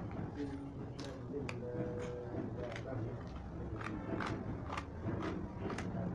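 Scissors cutting through stiff sego head-tie fabric, a string of irregular sharp snips.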